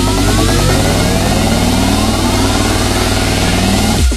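Vina House electronic dance music in a build-up: several synth sweeps rise steadily in pitch over a steady bass line, loud throughout.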